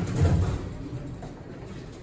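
Hydraulic elevator car giving a sudden low thump and rumble, then easing into a quieter steady hum.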